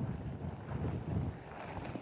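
Tropical-storm wind gusting upwards of 50 mph and buffeting a handheld microphone: a low, uneven rumble that swells and eases.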